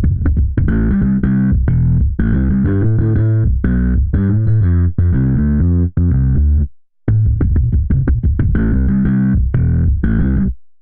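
UJAM Virtual Bassist SLAP software bass instrument playing a riff of short, plucked, percussive bass notes on its own, with a heavily swung groove. It stops briefly about seven seconds in and starts again.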